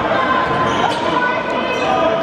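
A basketball dribbled on an indoor court, the bounces set against the steady chatter and shouts of a gym crowd.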